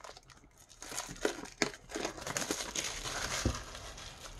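Plastic shrink-wrap crinkling and tearing as it is worked off a cardboard tarot deck box, in a dense run of crackles from about a second in, with a soft knock near the end.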